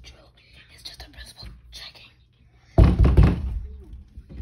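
Whispering, then about three seconds in a cluster of loud knocks and thumps against a panelled interior door, lasting about half a second.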